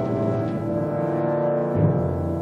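Orchestral film-score music: held, brass-heavy chords, with a low timpani stroke near the end.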